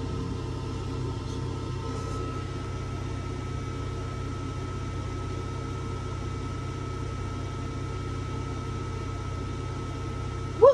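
A steady low mechanical hum with a thin, constant high whine over it, unchanging throughout.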